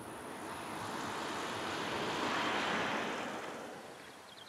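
A road vehicle passing: a rush of noise that swells to a peak about two and a half seconds in, then fades away.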